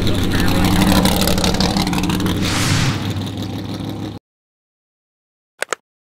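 Stroked 505-cubic-inch Mopar 440 V8 of a '66 Plymouth Barracuda gasser, breathing through twin carburettors on a tunnel ram, running loudly as the car rolls along, with a brief rushing burst about two and a half seconds in. The engine sound cuts off suddenly about four seconds in. Near the end comes a quick double mouse-click sound effect.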